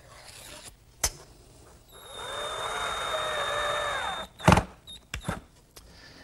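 Power drill driving a screw: its motor spins up, runs with a steady whine for about two seconds and winds down, fastening a hardwood cleat to a plywood jig base. A click comes before it, and two or three sharp knocks after it stops.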